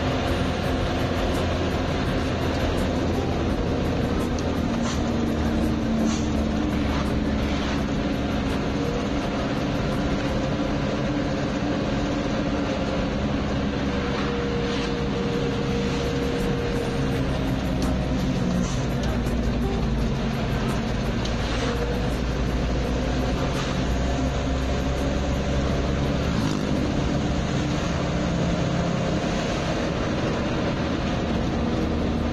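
A vehicle's engine running and road noise heard from inside the cab while driving at speed, the engine note shifting slowly up and down. Music plays in the cab.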